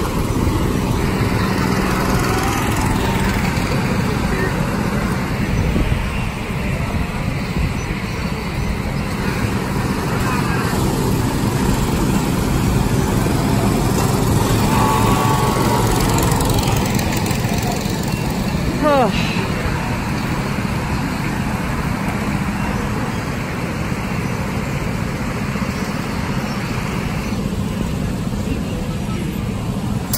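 Go-kart engines running and revving as karts drive around the track, one passing close by about halfway through.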